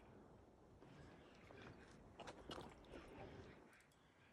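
Near silence, with faint scattered clicks and ticks in the middle stretch.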